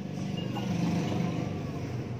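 Low rumble of a passing motor vehicle, swelling to its loudest about a second in and then fading.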